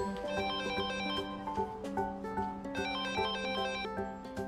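Mobile phone ringtone playing a melody of short, quick notes.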